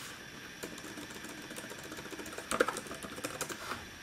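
Typing on the Acer Aspire Switch 11's detachable keyboard dock: a quick run of light key clicks, with a louder flurry about two and a half seconds in.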